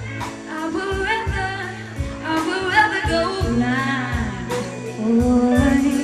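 Live band playing a slow blues-soul ballad: a female lead singer holding long, wavering sung notes over electric guitar, bass guitar and drum kit, with drum hits about once a second.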